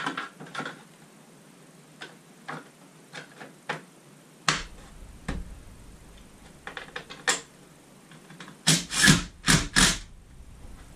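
Tools and mounting hardware being handled at a roof rail: scattered sharp clicks and light knocks, then a quick run of louder clattering knocks near the end.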